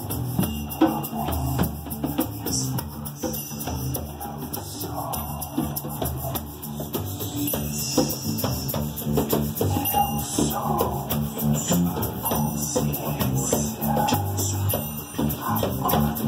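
Live acoustic band playing: hand drums (djembe and conga), guitar and wooden shakers keep a steady rhythm.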